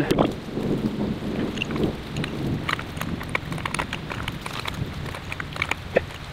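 Crinkly handling noise with scattered light clicks as thread tape is wrapped onto a stainless steel pipe nipple and check-valve fitting.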